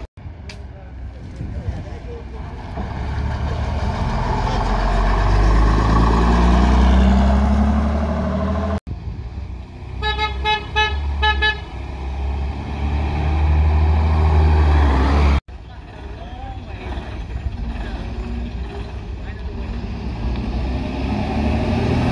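Diesel bus engines pulling away and accelerating past, each engine note rising as it gathers speed. A bus horn gives about six short toots in quick succession midway through.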